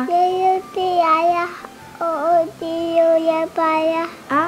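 A young boy singing into a microphone: a string of long, held notes with short breaks between them.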